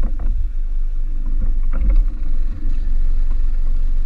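Steady low rumble of a boat's outboard motor running at low speed as the boat moves slowly on the water, with a few short knocks.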